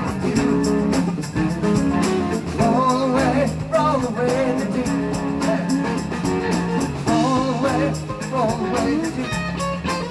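Live rock band playing: electric guitar and bass guitar over drums with a steady beat.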